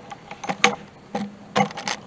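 A run of short, sharp clicks and rustles, several scattered through two seconds with a quick cluster near the end.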